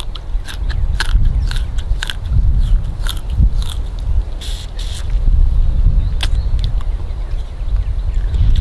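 A person biting and chewing a fibrous strip of yucca flower-stalk pith to crush out its sweet juice: a run of short, crisp crunching clicks. A low rumble of wind on the microphone runs underneath.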